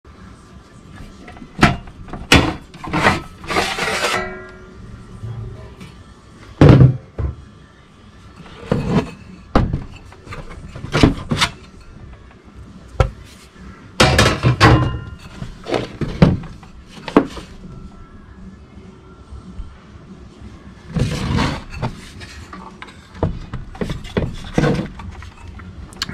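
Irregular knocks and clunks of a Codan 7727 HF transceiver's sheet-metal case and chassis being handled, its cover lifted off and the unit turned over, with a brief metallic ring about three seconds in.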